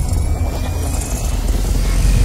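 Cinematic intro sound design: a loud, steady deep rumble with a faint hiss over it, between whooshes.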